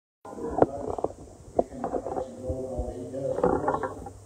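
Indistinct voice, with several sharp knocks during the first second and a half.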